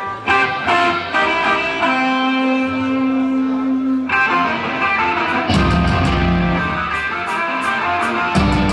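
Live rock band starting a song: an electric guitar plays the opening alone, single ringing notes and then one long held note. About five and a half seconds in, bass and drums come in with cymbal crashes and the full band plays on.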